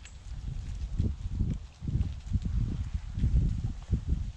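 Footsteps of a person walking across leaf-strewn grass, heard as a run of low thuds at walking pace, mixed with the rumble of a handheld camera being carried.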